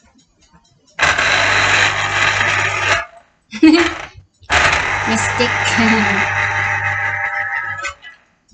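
Electric citrus juicer motor running as a half orange is pressed onto its spinning reamer cone, a steady whirring with a low hum. It runs for about two seconds, stops, gives a short burst, then runs again for about three and a half seconds.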